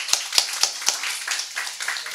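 Audience applauding, with sharp claps about four a second standing out close by.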